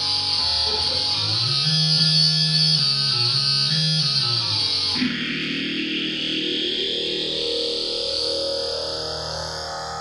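Electric guitar played through effects pedals with distortion, a moving low line of notes under busier playing. About five seconds in it changes to a washed-out effected sound with a slowly rising sweep.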